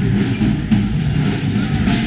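The loud din of a hall full of drums being tried out: irregular drum hits from several kits at once over a steady low rumble.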